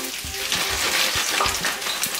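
Thin-sliced döner kebab meat frying in oil in a pan: a steady sizzling hiss with small crackles.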